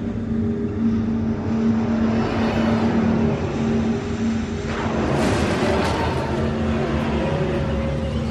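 Low, steady trailer drone: a deep rumble under a held tone. About five seconds in, a hissing whoosh swells over it.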